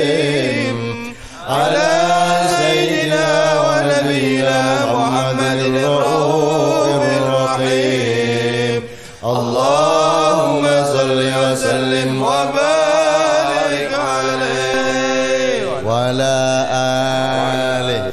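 Arabic devotional sholawat chanted in long, winding melismatic phrases over a steady low hum, with short breaks for breath about a second in, around nine seconds in and near sixteen seconds.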